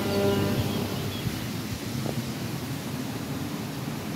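Violin background music fading out in the first second, giving way to a steady outdoor rushing hiss.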